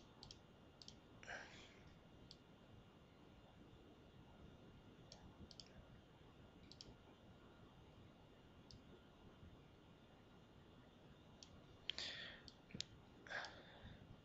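Near silence with scattered faint computer mouse clicks, a little more frequent near the end.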